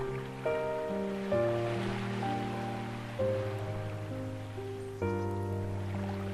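Slow ambient piano: soft chords struck every second or two and left to ring. Beneath them, a wash of ocean waves swells and fades about two seconds in.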